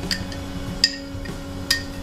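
Metal spoon clinking against the side of a drinking glass as powder is stirred into water: three sharp, ringing clinks a little under a second apart, over a faint steady hum.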